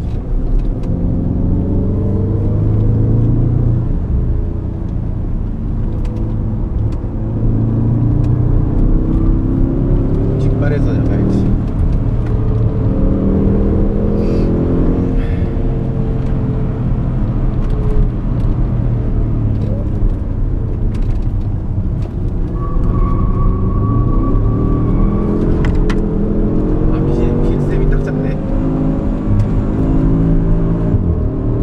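Porsche Cayenne Turbo's twin-turbo V8 heard from inside the cabin, driven hard on a track: it revs up, drops back with each gear change or lift, and climbs again, over and over. A short steady high tone sounds for a few seconds about three-quarters of the way through.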